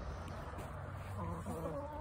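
A hen making low, wavering, buzzy trilling calls starting about a second in, over a steady low background hum.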